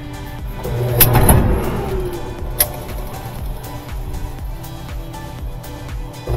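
Clothes dryer drive motor starting about a second in as the idler pulley is lifted by hand, then running with a steady hum; a sharp click a couple of seconds later.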